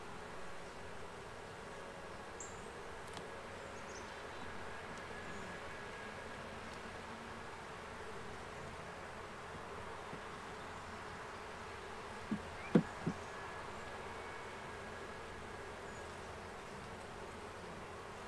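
Honeybees (Saskatraz stock) buzzing steadily around an open hive while its comb frames are worked. Three quick knocks come a little past two-thirds of the way through.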